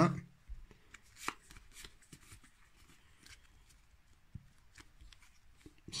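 Pokémon trading cards and a booster pack handled by hand: faint, scattered rustles and light clicks, a sharper one about a second in.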